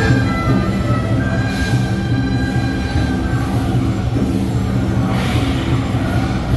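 Chinese traditional processional band playing loudly: a held melody line over a dense, steady drum beat, with bright crashes about two seconds in and again near the end.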